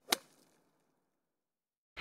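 A single short, sharp click just after the start, fading within a fraction of a second, at an edit cut, followed by dead silence.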